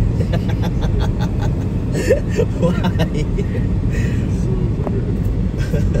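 Steady low road and engine rumble of a moving car, with quiet voices partway through.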